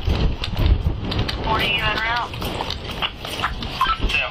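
A person's voice calling out briefly near the middle, over a low rumble and scattered knocks.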